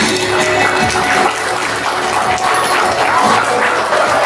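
Party music playing over a PA system while a crowd applauds and cheers; the music's bass drops away after about a second.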